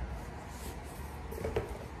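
Quiet workshop room tone with faint rustling and one light click about one and a half seconds in.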